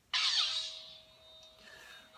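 Custom LED lightsaber's sound module playing its ignition through the hilt speaker: a sudden loud, harsh sound just after the start that fades within about half a second into a steady electronic hum with a held tone.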